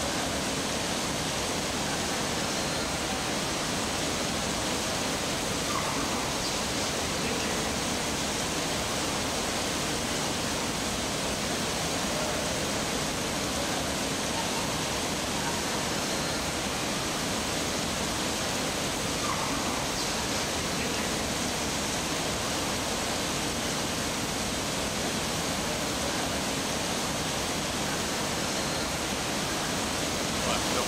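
Dense artificial indoor downpour: water streaming from ceiling valves onto a grated floor, giving a steady, even hiss of heavy rain that does not change in level.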